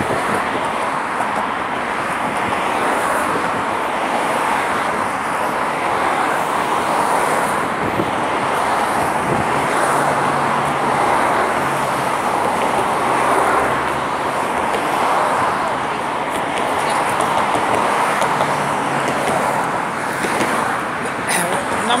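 Steady road-traffic noise from cars passing close by, with a low engine hum joining in for several seconds in the middle.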